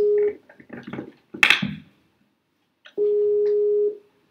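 Video call ringing tone over the room speakers: a steady single-pitched beep about a second long, which ends just after the start and sounds again about three seconds in, with a short spoken "hi" between the beeps.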